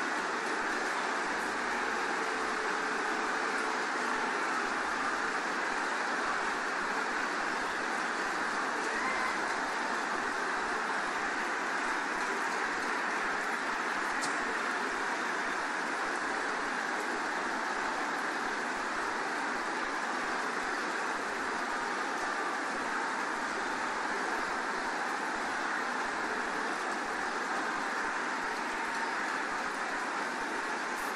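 Large congregation praying aloud all at once: many voices blend into a steady, even wash of sound in which no single voice stands out.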